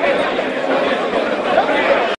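Indistinct chatter: several people talking at once, with no single voice standing out.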